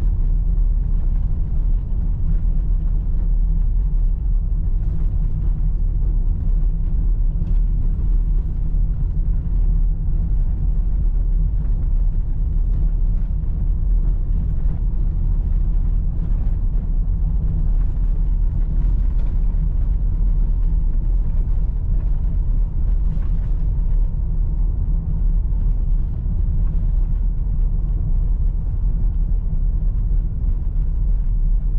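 A SEAT Ateca heard from inside the cabin, driving over cobblestones: a steady, low, dense rumble from the tyres and the road.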